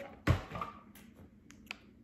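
Handling sounds as a small squeeze sachet of liquid supplement is picked up: one dull thump about a quarter second in, then a couple of light clicks.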